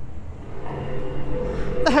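Low rumble of street noise with a steady mechanical hum that comes in under a second in, typical of traffic or an engine running close by. A woman's voice starts at the very end.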